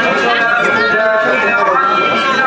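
Voices of several men talking at once in a crowd: general chatter with no single clear speaker.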